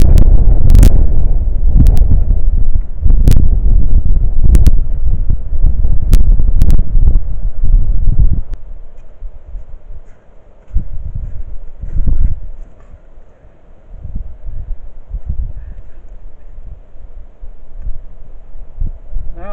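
Wind buffeting the microphone: a loud, low rumble with sharp clicks for the first eight seconds or so, then dropping away to a few short gusts.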